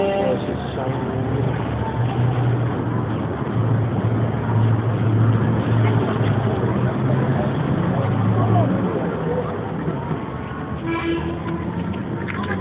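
Street noise: a low, steady vehicle engine hum, strongest through the middle, with people talking in the background.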